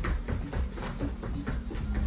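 Quick footfalls on a padded floor mat during fast side-to-side stepping, over background electronic music.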